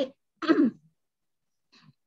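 A woman clearing her throat once, briefly, about half a second in.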